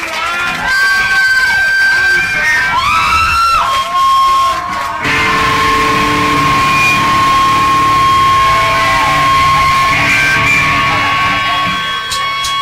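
Live rock band with electric guitars: squealing, pitch-bending guitar sounds over crowd noise, then the full band with drums comes in loud about five seconds in, a steady high feedback tone ringing over it.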